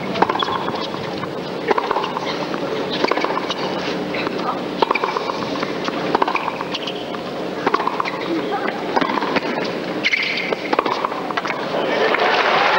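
Tennis rally: rackets striking the ball in turn about every one and a half seconds, with a steady arena murmur behind.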